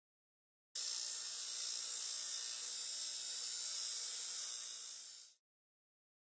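A high, hissing electronic buzz like static, part of a logo intro's sound effect. It starts suddenly just under a second in, holds steady for about four and a half seconds, eases a little and then cuts off.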